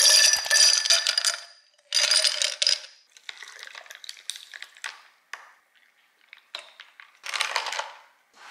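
Ice cubes dropped into a tall drinking glass, clattering and clinking against the glass in two loud bursts. This is followed by fainter crackles and clicks as a drink is poured over the ice, and a last burst of clinking near the end as it is stirred with a straw.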